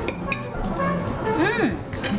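Knives and forks clinking against ceramic plates as food is cut, a couple of sharp clinks near the start, over soft background music. Near the end a short voice sound rises and falls in pitch.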